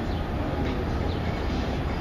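Steady low rumble and hiss of street traffic going past.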